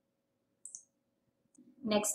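Near silence with one brief, high-pitched click less than a second in, then a woman's speech starts near the end.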